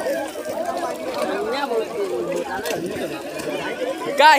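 Several people talking at once in overlapping chatter, with no single clear voice.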